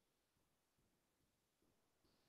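Near silence: a pause in the talk, with only a very faint noise floor.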